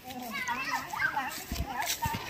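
Several young children's voices calling and chattering at once, a little distant, as they run across a grass field. A few soft low thumps come in the second half.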